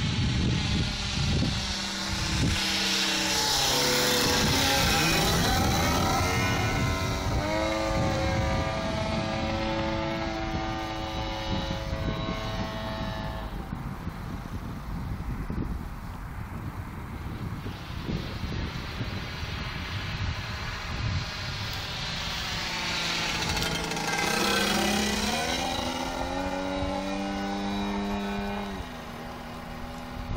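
Large RC model airplane's DLE 55 two-stroke petrol engine running in flight. Its note sweeps down and back up in pitch as the plane passes a few seconds in, and again near the end.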